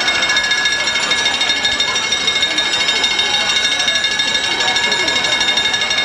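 A drum and bugle corps playing loud from the stands: the horn line holds a sustained chord over a rapid, buzzing drum roll, with the stadium's distance and echo on it.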